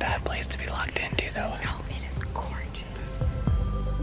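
Whispered speech: a man whispering to the camera, with background music faint underneath.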